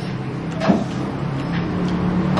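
Steady low hum of a running motor engine, with a short scrape of a spoon in a soup bowl about two-thirds of a second in.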